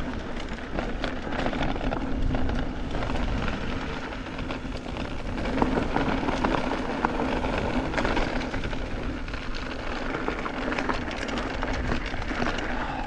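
Mountain bike riding over a rough dirt trail: steady wind rumble on the onboard camera's microphone, with tyre noise and many small rattles and knocks from the bike over the bumps.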